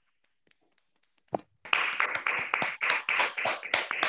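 Hand clapping from meeting participants, heard through a video call's audio. It starts about a second and a half in, after a near-silent gap and a single click, and then runs dense and irregular.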